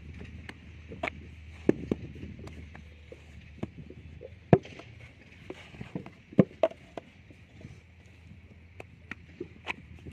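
Wet clay being worked by hand into a brick mould: irregular slaps and knocks of mud, with a few sharper thumps around the middle.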